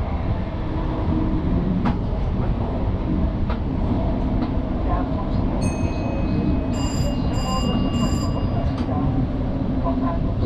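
Steady running rumble of an NS VIRM double-deck electric intercity, heard from inside the driver's cab while running through a tunnel. About seven seconds in, three short high-pitched beeps sound in quick succession.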